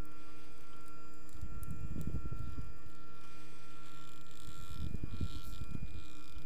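Desktop filament winder's stepper motors running steadily as the mandrel turns, a constant hum of several fixed tones, with low rumbling handling noise twice as heat shrink tape is fed onto the turning mandrel.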